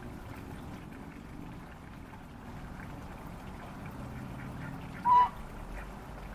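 A single short, loud call from a domestic waterfowl about five seconds in, over a faint steady background.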